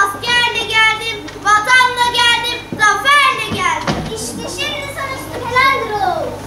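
A child's voice speaking lines in a school stage performance, in short high-pitched phrases that ease off after about four seconds.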